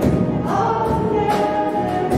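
Live church worship band: several voices singing held notes together over piano and drums, with a drum stroke at the start and another just over a second in.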